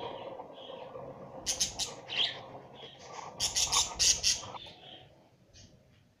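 Budgerigars chirping and chattering in harsh, rapid bursts, one group about a second and a half in and a louder run from about three and a half to four and a half seconds.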